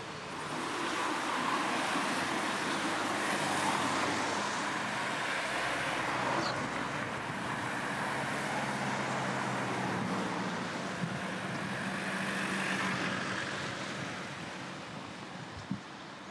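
Road traffic: motor vehicles passing with tyre and engine noise, swelling about half a second in, holding, and fading near the end, with a low engine hum beneath. A single short knock comes near the end.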